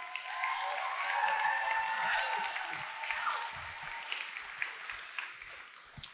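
Large audience applauding and cheering, dying away over the last couple of seconds.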